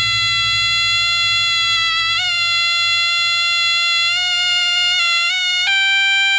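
Sronen, the East Javanese double-reed shawm, playing a long held, nasal note with small ornamental turns, stepping up in pitch near the end. Soft hand drums keep a rhythm underneath.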